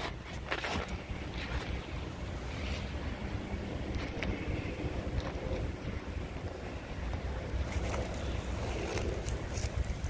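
Wind buffeting the phone's microphone: a steady low rumble, with a few faint clicks from the phone being handled or from footsteps.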